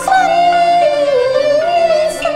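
Cantonese opera singing: a high voice draws out one long note that wavers, sags and rises again, over instrumental accompaniment.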